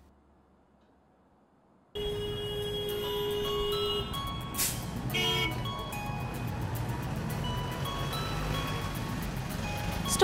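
Near silence for about two seconds, then traffic noise comes in suddenly under background music with long held tones.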